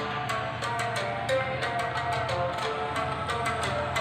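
Electronic music with a steady beat playing from a car double-DIN head unit through a pair of Polytron tower speakers, a sound test of the speakers.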